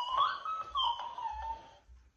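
Talking dancing cactus toy repeating a child's words back in a high, sped-up squeaky voice, stopping just before the end.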